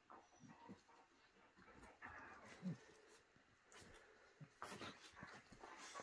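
A whippet and a cockerpoo play-fighting gently on a bed: faint dog sounds, with one short, low vocal sound about halfway through and a few soft scuffles against the bedding near the end.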